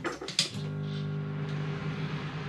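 Countertop microwave oven being set and started: a few sharp clicks from its controls, then about half a second in it starts running with a steady electrical hum.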